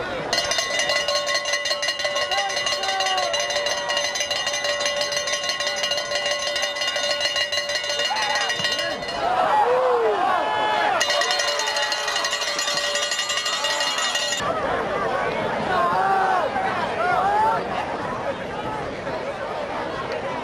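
Cowbell shaken rapidly and continuously, a bright metallic clanging that goes on for about nine seconds, stops, then starts again for about three more seconds and cuts off suddenly. Spectators' voices and shouts are heard under and between the bouts.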